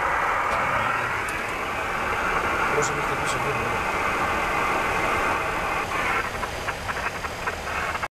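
HF radio receiver hissing with static interference from the aircraft's static discharge (St. Elmo's fire), with crackles in the last two seconds.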